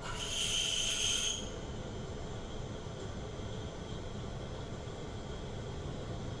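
A CNC milling machine drills aluminium with a long twist drill: steady spindle and cutting noise with a faint high whine. In the first second and a half a louder, hissing burst comes as the drill is pulled up at rapid feed and sent back into the hole, typical of a peck-drilling cycle.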